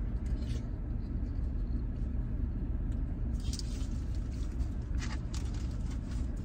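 Steady low rumble of a parked vehicle's engine idling, heard from inside the cabin, with a couple of brief rustles about halfway through and again near the end.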